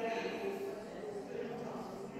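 Indistinct voices of people talking inside a large church, no words clear.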